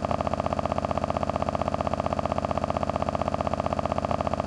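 Steady synthesizer drone, a low chord pulsing evenly about a dozen times a second: the channel's end-card outro sound.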